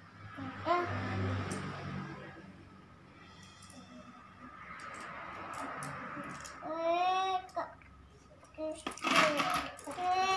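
Young children's wordless vocalizing and babbling: a whining call about seven seconds in and a louder outburst near the end. Small clicks of coins are handled and dropped into a plastic coin bank between the calls.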